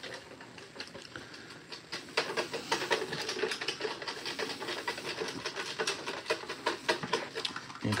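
Folded paper entry slips being shaken in a clear plastic jar to mix raffle entries. A quick, continuous rattle starts about two seconds in.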